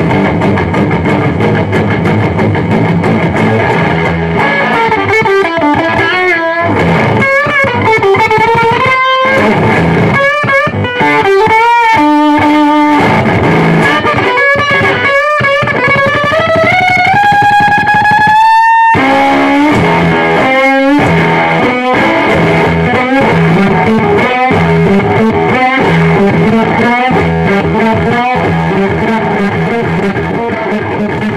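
Electric guitar played through cloned fuzz pedals with heavy distortion. Ringing chords give way to single-note lead lines with string bends and vibrato. A long note is bent upward and held, cuts off abruptly about two-thirds through, and the playing ends in rhythmic chugging riffs.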